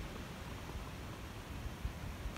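Quiet background: a faint low rumble and hiss with no distinct event.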